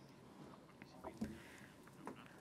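Quiet pause in speech with faint, low voice sounds in the background and one short louder voice sound a little over a second in.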